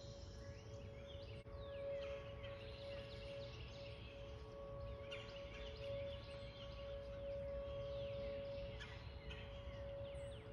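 Distant Whelen outdoor warning sirens holding one steady tone that slowly swells and fades as they rotate, sounding for a scheduled monthly test rather than a real tornado warning. Birds chirp over it.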